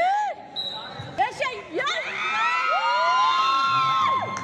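Excited shouting from kabaddi players and onlookers in a hall during a raid. Long drawn-out calls rise and fall, and one holds steady near the end. A sharp knock comes about a second in.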